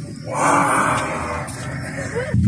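A loud, rough growling roar lasting about a second, starting just under half a second in: a monster scare roar.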